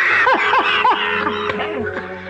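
Two men laughing heartily together, with a quick run of three 'ha' pulses in the first second.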